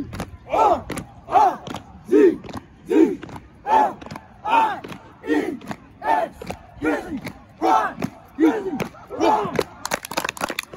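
A group of young men shouting short calls together in a steady rhythm, a little more than one shout a second, some calls pitched higher and some lower.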